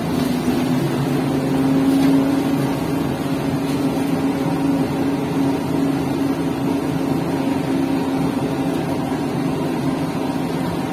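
Škoda 15Tr03/6 trolleybus under way, heard from inside the passenger cabin: a steady pitched electric drive hum over road noise, swelling slightly about two seconds in.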